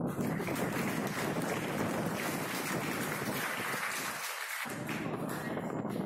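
Audience applauding: a dense patter of hand claps that starts suddenly and dies away near the end.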